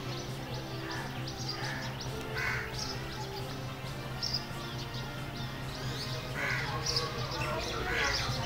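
Birds calling outdoors: about four short harsh calls and scattered higher chirps, over a steady low hum.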